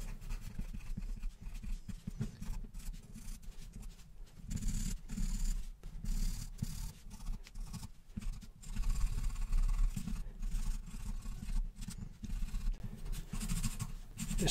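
Charcoal pencil scratching across toned drawing paper in quick, irregular hatching strokes, some stretches louder than others.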